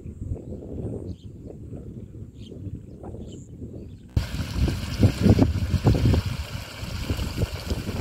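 Wind buffeting the microphone: an uneven low rumble that abruptly grows louder about four seconds in, with a steady hiss over stronger gusts.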